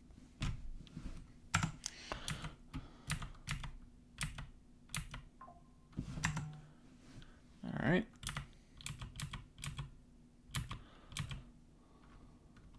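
Computer keyboard keys pressed in irregular, scattered clicks while navigating and editing code. A brief vocal murmur comes about eight seconds in.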